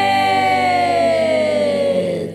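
A woman's long held sung note at the end of a rock song, sliding smoothly down in pitch and stopping near the end, over a held backing chord.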